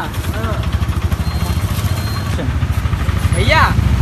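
A motor vehicle engine idling close by: a low, rapid, steady rumble, with brief voices over it.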